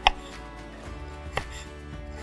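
Miniature knife cutting through a slice of cucumber onto a small wooden cutting board: two crisp cuts about a second and a half apart.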